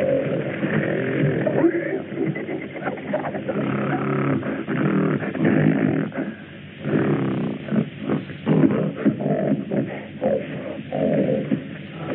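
Wild animals roaring and growling in a dense, continuous stretch, with a brief lull a little past the middle, on an old soundtrack with no high end.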